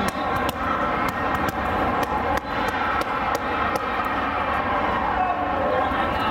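Echoing din of a large sports hall full of overlapping voices, with scattered sharp thuds of volleyballs being hit and bounced on nearby courts.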